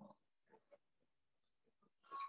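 Near silence: room tone, with a few very faint brief sounds.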